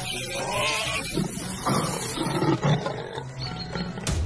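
A leopard fighting a warthog: harsh animal calls and growls in irregular bursts, about two a second.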